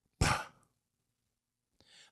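A man's short, breathy exhale into a handheld microphone, just after the start.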